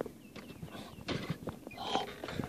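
Footsteps on a wooden deck and phone handling noise, a few irregular soft knocks, with a few faint short high chirps in the first second.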